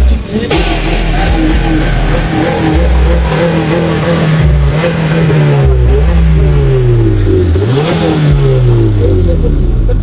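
Modified Honda Civic's engine being revved over and over, its pitch climbing and dropping again several times, over a deep low rumble.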